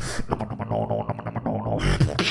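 Beatboxing into a handheld microphone: a fast rhythm of mouth clicks and percussive hits over a low droning hum, with a loud hissing snare-like hit near the end.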